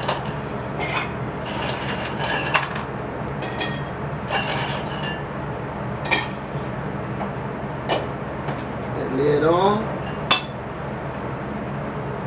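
Ice cubes being dropped into a stainless steel cocktail shaker, making a series of separate sharp clinks spread over several seconds.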